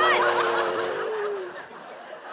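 A man's long held, strained groan while pushing, fading out about a second and a half in. Studio audience laughter breaks out over it at the start.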